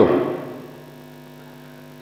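Steady low electrical hum from a public-address system, with several tones held level, heard in a pause in the talk; the echo of the last spoken word dies away in the first half second.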